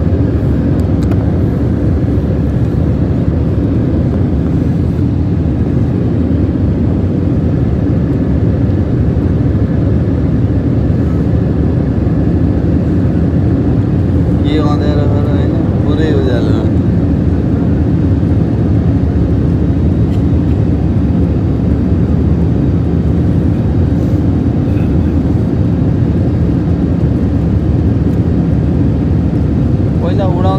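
Steady, loud noise of a jet airliner's engines and rushing air heard from inside the cabin, with a short voice about halfway through.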